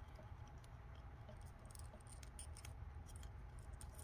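Faint scattered clicks and light scraping of a plastic action figure and its gift-box accessory being handled and fitted into the figure's hands, over quiet room tone.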